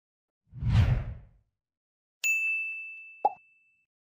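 Animated subscribe-card sound effects: a short whoosh with a low boom, then a bright bell ding that rings for about a second and a half, and a short click near the end.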